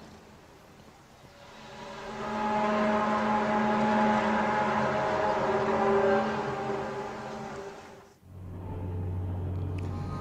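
The so-called 'apocalypse' sky sounds recorded in Kiev: a long, eerie drone made of several steady tones at once. It swells up about two seconds in, holds, then fades and cuts off abruptly near the end, giving way to a low steady hum.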